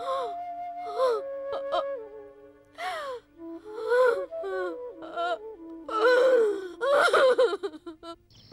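A woman's gasping, wordless vocal bursts with sliding pitch, repeated several times, over background music with long held notes.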